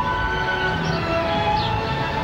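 Orchestra playing, with strings holding long, sustained notes.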